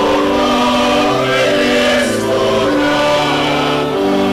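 Church choir singing a response of the Evensong preces in harmony, with organ accompaniment; the held chords change in steps every second or so.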